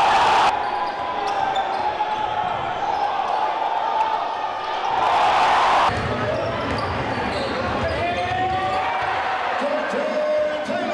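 Live gym sound from a high school basketball game: a basketball dribbling on a hardwood court under steady crowd chatter. Louder spells of crowd noise come at the start and again about five seconds in, each cutting off suddenly.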